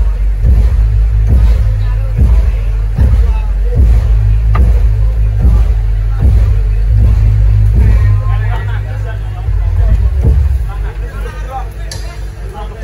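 Jaranan gamelan playing loudly through a sound system: a deep, steady gong and bass hum under regular drum strokes, about one every 0.8 seconds. A voice comes in over it late on, and the music gets quieter near the end.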